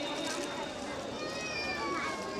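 Low murmur of voices and room noise in a hall. Near the end comes a faint, high, drawn-out tone that falls slightly in pitch.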